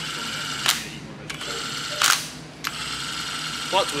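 Cordless power driver spinning nuts down the main-cap studs of an aluminum LS3 block, three runs of steady motor whine, each ending in a short loud rattle as the nut seats.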